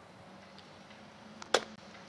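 Golf club striking a ball off an artificial-turf hitting mat: one sharp click about one and a half seconds in, just after a fainter tick, in an otherwise quiet moment.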